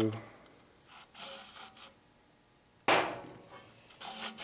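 Faint rubbing and handling as a starter pull cord is drawn through a recoil starter assembly and its metal shroud, then one sharp, hard knock about three seconds in that rings out briefly.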